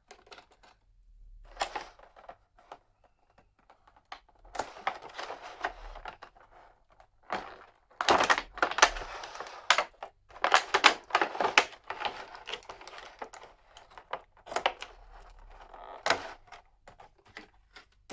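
Clear plastic blister packaging crackling and clicking in irregular bursts as an anime figure is pried out of its tray, which holds it tightly. The busiest, loudest crackling comes in the middle.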